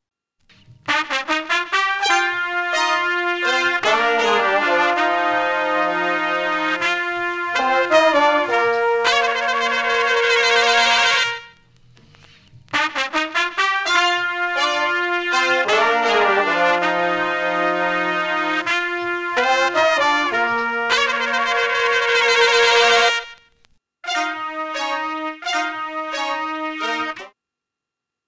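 A live-recorded brass horn section sample at 81 BPM playing a soul horn phrase twice, each pass ending on a long held chord. Near the end come a few short clipped stabs of the same horns.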